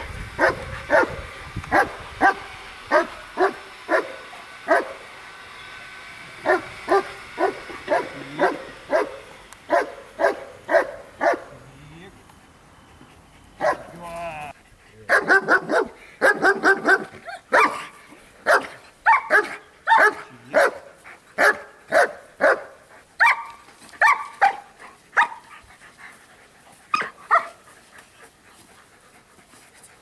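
German Shepherd dogs barking repeatedly, in runs of sharp barks about one to two a second, with a short break near the middle.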